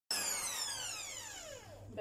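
Electric hand mixer's motor whine cutting in suddenly and then falling steadily in pitch and level over about two seconds as the motor spins down after being switched off, its beaters in stiffly beaten egg whites.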